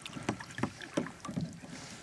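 Kayak paddling on a creek: paddle blades dipping and splashing, with irregular small water splashes, drips and knocks against the hull.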